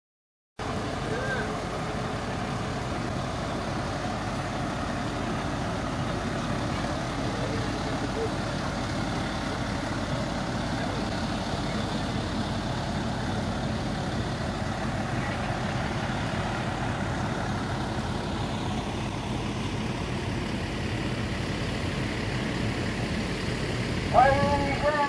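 Fire engine's diesel engine idling steadily, cutting in just under a second in, with faint voices of people around it.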